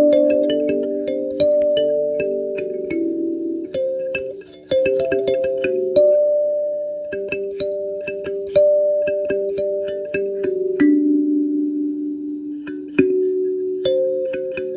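Kalimba being plucked in a slow, relaxing tune: ringing metal-tine notes that overlap and slowly fade, each starting with a small bright click.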